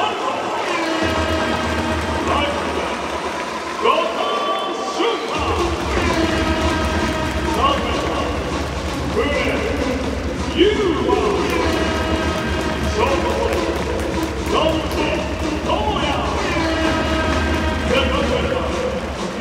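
Stadium public-address announcer calling out each fielder's position and name in long, drawn-out calls over stadium music. A bass line comes in about a second in and grows heavier after about five seconds.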